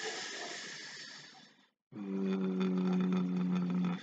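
A man's breathy exhale fading out over the first second and a half, then a long held hesitation sound, "uh", that lasts about two seconds.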